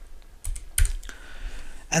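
A few keystrokes on a computer keyboard as a word is typed, sharp separate clicks.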